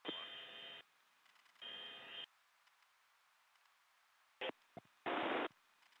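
Short bursts of radio noise on an aircrew radio channel: two buzzing bursts with steady tones in the first two seconds, two sharp clicks about four and a half seconds in, then a half-second hiss of static.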